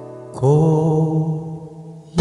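Acoustic guitar chords strummed and left to ring: a chord fades out, then a new one is struck about half a second in and rings down slowly.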